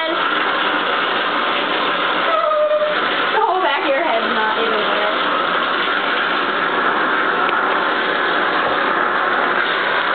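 Bathtub faucet running, a steady rush of water.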